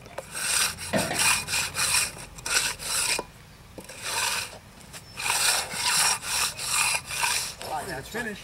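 Steel hand concrete tools (an edger, then a groover run along a board) scraping across fresh, wet concrete in quick repeated strokes, with short pauses in the middle.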